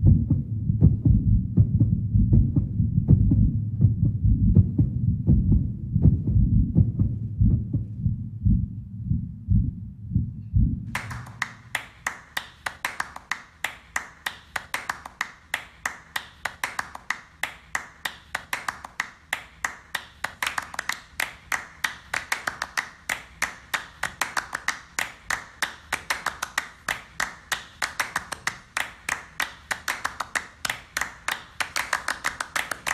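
Performance soundtrack: a deep, repeating low pulse, which changes suddenly about eleven seconds in to a steady rhythm of sharp clicks, about three a second.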